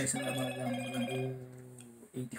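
A phone's ringtone: a melody of held electronic tones that starts suddenly and fades out after about two seconds.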